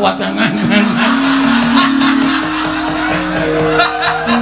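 Javanese gamelan accompaniment to a wayang kulit performance: a long held vocal line that steps upward in pitch, over quick percussive taps.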